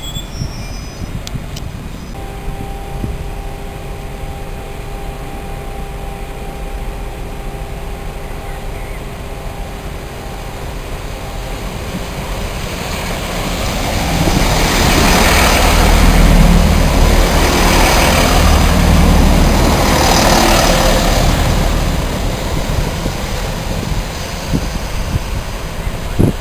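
A First Great Western diesel multiple unit passing close along the platform: its engine and wheel noise build from about halfway in, peak for several seconds with a deep rumble and repeated swells as the carriages go by, then ease off near the end. A steady hum sounds beneath in the first part.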